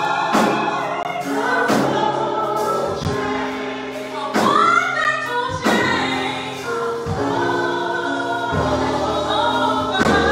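Gospel singing by a small group of voices over held instrumental chords, with a few sharp percussive hits.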